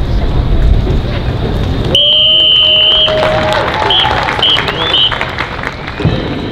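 Crowd and street noise, then about two seconds in a whistle sounds one long blast followed by three or four short blasts: a drum major's whistle cue for the marching band to start playing.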